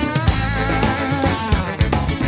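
Background music: a guitar-led track with bass and drums and a steady beat.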